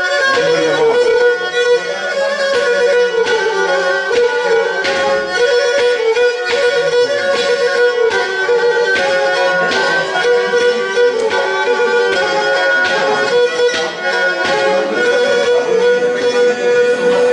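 A Pontic lyra (kemençe), a small upright bowed folk fiddle, playing a traditional tune, with a steady note sounding beneath the melody throughout.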